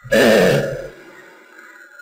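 A man's short wordless vocal sound, about half a second long and falling in pitch, fading away after it.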